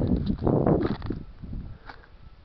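Footsteps on a crushed boat's broken debris, with irregular knocks and clatter in the first second or so, then quieter.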